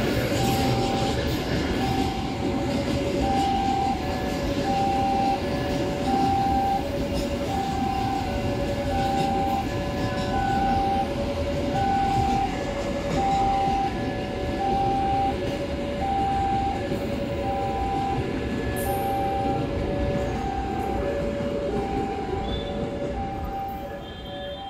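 Train of empty flat wagons rolling past on the rails, a steady rumble of wheels and running gear. Over it a two-note warning signal keeps sounding, the higher and lower note taking turns about once a second.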